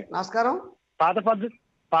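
Speech only: two short spoken phrases with a brief pause between them.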